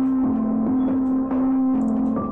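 Background music: a sustained low melody whose note changes about every half second, with ringing, gong-like overtones.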